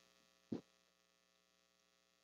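Near silence with a faint, steady electrical mains hum, and one brief short sound about half a second in.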